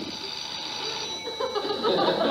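An old desk telephone's bell ringing steadily, and near the end a studio audience starts laughing.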